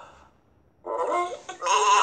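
Sheep bleating, a cartoon sound effect with a wavering pitch. It starts about a second in, and a louder bleat follows near the end.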